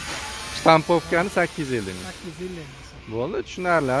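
A man talking in Uzbek over a steady background hiss that drops away about halfway through.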